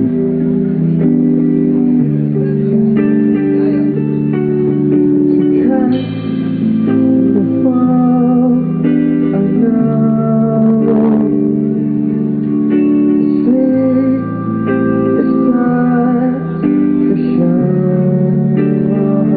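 Live pop-rock band playing: electric guitar chords over bass and keyboards, with a male lead voice singing.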